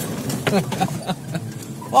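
A modified Maruti Gypsy jeep's engine running as it drives down a steep sand incline, with a few knocks from the vehicle. A man laughs briefly over it.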